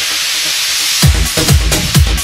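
Electronic dance music, a house remix: the beat drops out under a rising noise sweep, then the kick drum and bass come back in about halfway through with a steady four-on-the-floor pulse.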